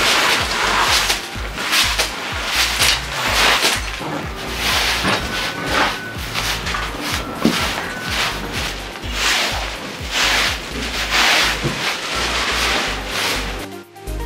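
A broom sweeping dust and debris across tatami and bare floor in quick repeated strokes, over background music with a steady low beat.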